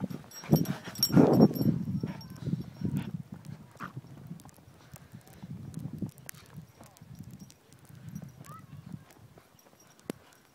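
A dog running close past on snow, its paws thudding loudly for the first couple of seconds, followed by softer, irregular thuds of footsteps in snow.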